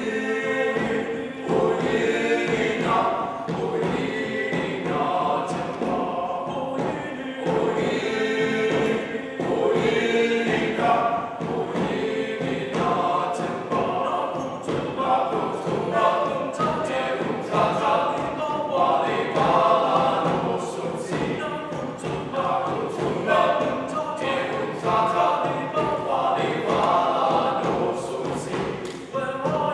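Choir singing in several parts.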